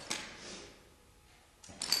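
A single sharp tap of a clogging shoe's metal taps on a wooden floor, dying away into quiet.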